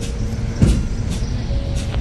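Low rumble of a motor vehicle passing on the street, with a brief low thump about half a second in.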